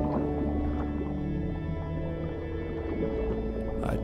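Slow ambient music of sustained low notes, overlaid with whale calls: long moaning glides that rise and fall in pitch. A singing voice comes in at the very end.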